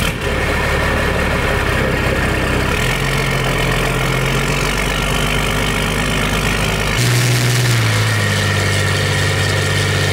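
An old heavy truck's engine idling with a steady, low note. The note steps to a different pitch about three seconds in, and abruptly again about seven seconds in, as the truck gets under way on the road.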